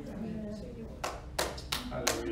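A few sharp hand claps, starting about a second in and coming irregularly about three a second, over a faint background voice.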